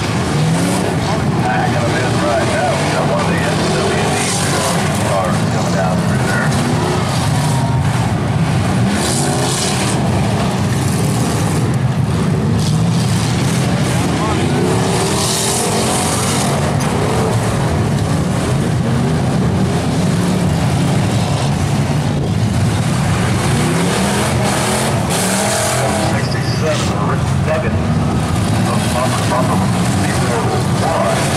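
Several demolition derby street stock car engines running and revving at once, rising and falling in pitch, with occasional bangs of cars colliding.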